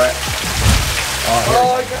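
Small waterfalls splashing steadily into an indoor pond, with tongs stirring the water surface; a low thump about two-thirds of a second in.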